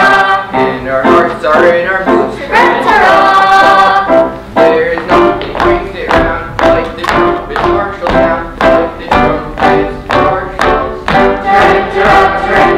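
A stage musical number: a chorus of young voices singing with instrumental accompaniment, settling into an even march beat of about two beats a second.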